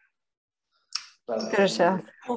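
Dead silence for about a second, then a single short click, after which a woman starts speaking.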